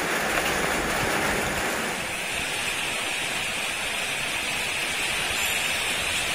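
Steady rain: an even hiss of falling drops, unbroken and without pauses.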